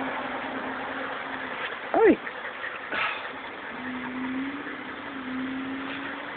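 A steady low hum from an idling car engine, fading out for about two seconds in the middle and then returning. A person says a high-pitched 'Hi' about two seconds in, the loudest sound, and there is a short click about a second later.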